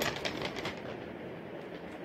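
A brief rustle and a few light taps of a paper blind bag being flipped about in the hand, then faint steady room noise.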